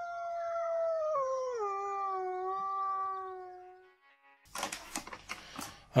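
A single long wolf howl that holds one pitch, drops lower about a second in, and fades out after about four seconds. It is followed by a run of small clicks and clinks of objects being handled on a table.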